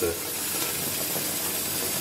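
Water running from a tap into a bathtub: a steady, even rushing hiss.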